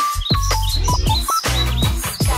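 Upbeat intro music with a steady, bass-heavy beat, overlaid with a run of short, high bird-chirp sound effects.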